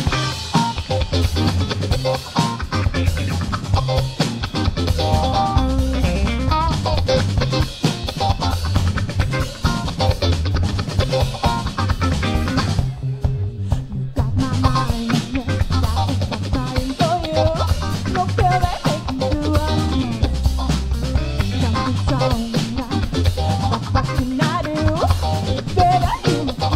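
Live band playing: saxophone, electric guitar and drum kit kick in together right on the count-in's "four!" with a steady beat. About halfway through, the drums drop out for a short break of about a second before the band comes back in.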